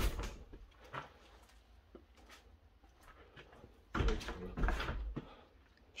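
A door being handled and pushed open: a loud knock at the start, a few light clicks, then a longer run of heavy thuds about four seconds in.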